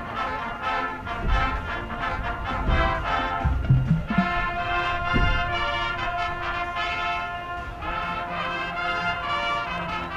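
High school marching band playing a brass-led tune, with sousaphones and trumpets over deep bass drum hits. Chords are held for a few seconds in the middle.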